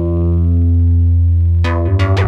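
Synton Fenix 2 analog modular synthesizer holding a low buzzy note whose overtones sweep slowly through its phaser in feedback mode, then a bright new note strikes near the end, followed quickly by another at a different pitch.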